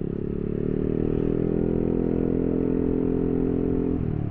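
Yamaha New Aerox 2022 scooter with a 3 Tech Ronin Hanzo aftermarket exhaust running under way, its single-cylinder engine note rising gently in the first second or so and then holding steady.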